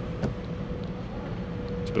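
Steady low hum of a large, empty arena's air handling, with a faint steady higher tone over it and a small click about a quarter second in.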